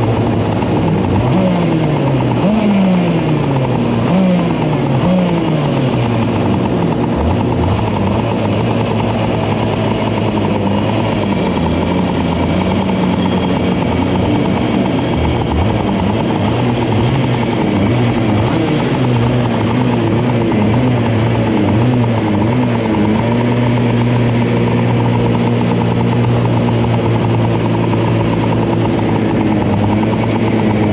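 Several 125cc two-stroke shifter kart engines running at idle and being blipped, their pitches rising and falling over one another above a steady idle drone.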